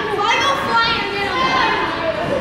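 Children shouting and calling out over one another while playing, several high-pitched voices echoing in a large gym hall.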